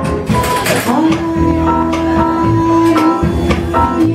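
Live vocal jazz quartet playing: piano, upright bass and drums with a cymbal wash near the start, and a female singer who slides up into one long held note about a second in.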